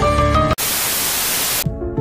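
Music cuts off about half a second in and is replaced by a burst of loud static hiss lasting about a second. The hiss stops abruptly and faint low music follows.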